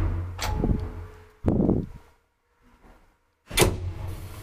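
Old 1963 Kone traction elevator responding to a car button press: a series of loud mechanical clunks and thumps from the door and machinery as the car is called to the basement, with a brief silent stretch in the middle.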